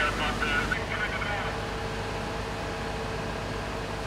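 Fire appliance engines and pumps running at a steady drone with a constant hum, and indistinct voices over the first second or so.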